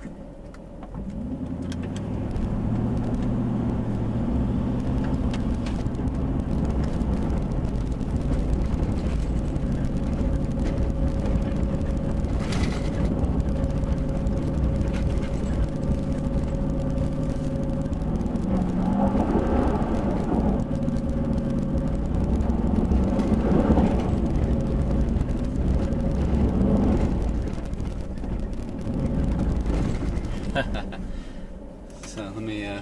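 Nissan Titan's V8 engine pulling under load up a steep dirt climb, heard from inside the cab. The revs pick up about a second in, then surge and drop back several times in the second half.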